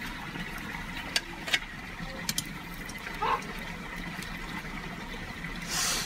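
A rat roasting over an open wood fire: a steady sizzling hiss with scattered sharp crackles from the burning wood.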